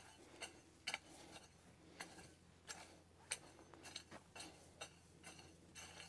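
Faint scrapes and small knocks of a triangular steel hand hoe cutting and dragging through dry, stony soil, coming irregularly about one or two a second.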